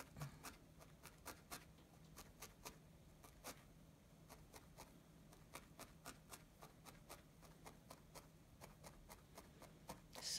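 Felting needle stabbing repeatedly through loose wool into the felt picture: faint, quick, irregular ticks, a few a second, over a faint low hum.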